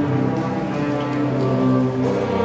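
School chamber orchestra playing a slow passage of long held chords, the low notes shifting a few times.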